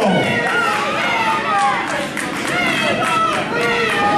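Many voices shouting and talking over one another: a wrestling crowd reacting.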